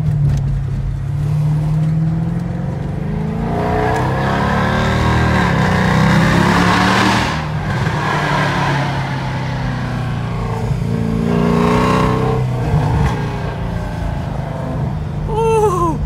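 Mercedes C63 AMG's 6.2-litre V8 through an Agency Power aftermarket exhaust, heard from inside the cabin while accelerating hard through a tunnel: the revs climb, fall at an upshift a little past halfway, then climb and fall once more near the end.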